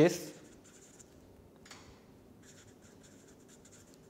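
Marker pen writing on paper: faint scratchy strokes in short runs, a brief one near the middle and a longer stretch later on.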